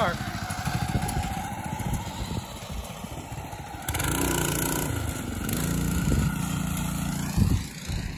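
Small go-kart engine running as the kart pulls away, growing fainter with distance. About four seconds in, a louder, steady engine note takes over.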